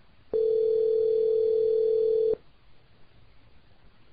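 Telephone ringback tone heard by the caller on a Cisco IP Communicator softphone: one steady two-second ring starting about a third of a second in. It means the called extension is ringing and has not been answered.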